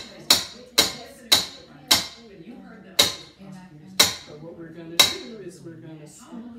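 Wire whisk knocked against the rim of a stainless steel stand-mixer bowl to shake off the thick coconut pecan filling: seven sharp metallic knocks with a short ring, about two a second at first, then slowing to about one a second.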